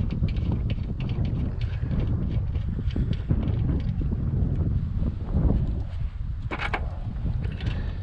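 Wind buffeting the microphone in an uneven low rumble, with faint clicks and taps of hand work on a snowblower engine as the oil drain plug is threaded back in, and a couple of short scrapes in the second half.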